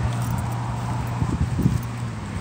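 Pit bull snuffling with its nose in the grass, a few short, irregular low snorts in the second half, over a steady low hum that fades near the end.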